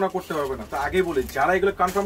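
Only speech: a man talking in Bengali in a low, drawn-out voice.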